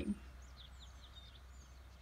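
Faint birds chirping, a scatter of short high chirps in the first second or so, over a steady low hum.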